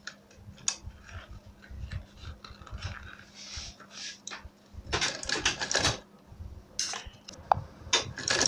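Scattered small clicks and rustles of a sewing machine being set up and a folded PVC-leather strip being handled under the presser foot, busier about five seconds in and again near seven seconds.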